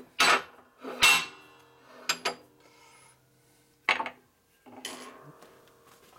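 Heavy steel press blocks and a motorcycle transmission gear set clanking on the steel bed of a hydraulic shop press as they are shifted and set in place: about five sharp metal knocks, each ringing briefly.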